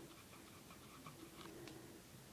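Near silence, with a few faint light ticks and rubbing as a fingertip works the pressed eyeshadow pans of the palette.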